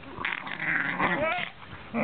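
A dog's whining, growling grumble during rough play with another dog, gliding up and down in pitch for about a second and then dying away.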